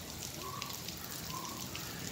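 Fine spray from a garden hose falling as droplets onto foliage and paving, a steady hiss like light rain.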